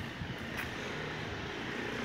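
Steady low rumble of street traffic, with a faint engine hum in it.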